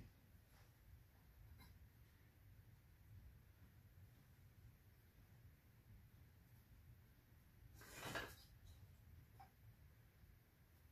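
Near silence with faint handling of a lantern's pump, and one brief soft rub about eight seconds in.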